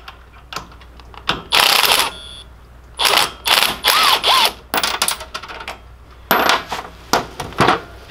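Cordless impact wrench running in several short rattling bursts as it zips the nuts off the steering U-joint's five-sixteenths bolts.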